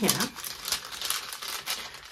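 Glassine bag crinkling and crackling as a hand is pushed inside it and works the thin paper.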